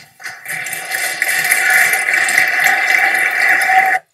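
Audience applauding, building up over the first half-second, then steady, and cut off suddenly at the end.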